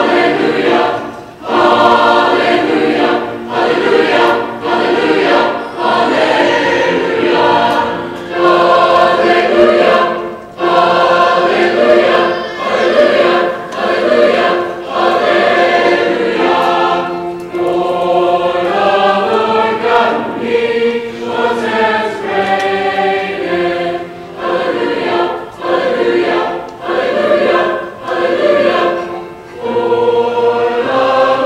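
School chorus singing, many voices sustaining notes together in phrases separated by brief breaks.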